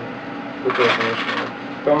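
A man speaking Russian, pausing at first, with a short voiced, breathy utterance in the middle before his speech resumes near the end.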